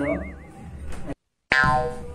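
Cartoon-style 'boing' sound effect: a wobbling, warbling tone that fades out within the first half second. Then comes a brief dead silence, and sound cuts back in abruptly about one and a half seconds in.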